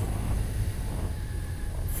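Steady low rumble of a touring motorcycle under way at road speed, its engine and road noise mixed with wind on the microphone.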